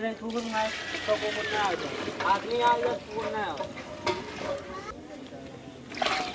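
Chatter of several voices, then near the end water from a steel bucket starts pouring and splashing into a large pot of paneer curry.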